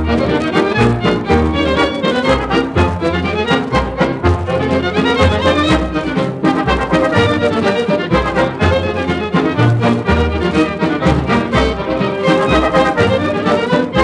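Instrumental break of a 1930s Soviet variety (jazz) orchestra with a steady beat, played back from a 78 rpm gramophone record.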